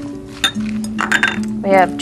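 A single light clink of glassware about half a second in, as small glass prep bowls and a spatula knock against a large glass mixing bowl, over background music with long held notes.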